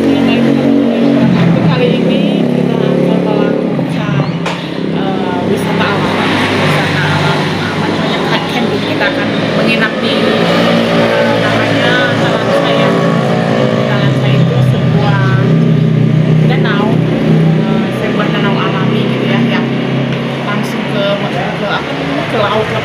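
A woman speaking, with a vehicle engine running steadily underneath her voice.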